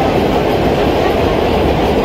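Vintage New York City subway train of 1930s R1–R9-series cars running at speed through a tunnel, heard from inside the car as a steady, loud rumble of wheels on rail.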